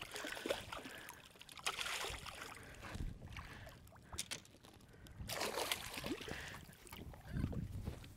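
Faint water lapping and sloshing against a bass boat's hull, coming and going in soft swells, with a few light clicks near the middle.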